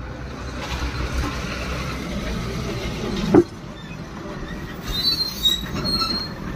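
Spiced puffed rice poured from a stainless steel tin into a paper cone: a dry rushing rattle for about three seconds, ending in one sharp knock of the tin, then quieter rustling with a few faint high squeaks.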